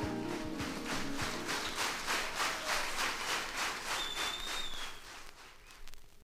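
A jazz-fusion band's last chord on electric piano and synth, with drum hits, dies away about a second and a half in, and audience applause follows, with a short whistle from the crowd near the end. The sound fades down in the last second.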